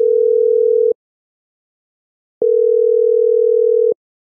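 Telephone ringback tone on the caller's line: a single steady low beep about a second and a half long, repeating with pauses of the same length, twice in this stretch. The call is ringing at the other end and has not yet been answered.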